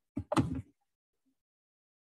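A man's voice finishing a word in the first half-second, then dead silence.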